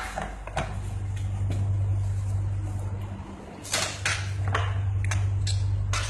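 Metal baking tray and saucepan being handled on a kitchen counter: a few short knocks and clatters, more of them near the end, over a steady low hum.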